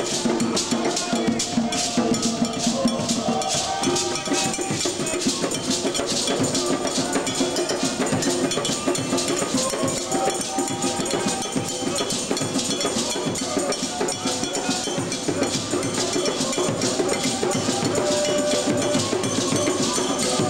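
Live djembe drum ensemble playing with voices singing over it; a steady, even beat of sharp strikes runs on top.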